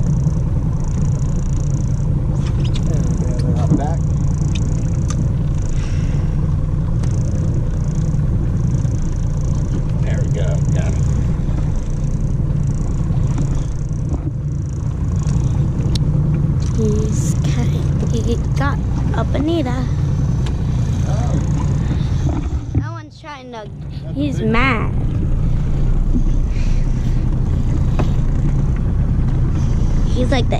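Steady low rumble on a small open fishing boat at sea, dipping briefly about three-quarters of the way through, with a few short faint voices in the middle.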